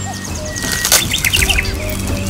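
A small bird chirping, a quick run of chirps about halfway through, over background music with steady held notes. A single sharp click comes just before the chirps.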